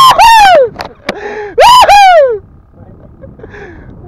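A man's loud, high-pitched laughter in long whoops that slide down in pitch, loud enough to clip, stopping about two and a half seconds in.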